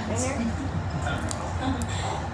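Faint background voices over a low steady hum, with a few small clicks.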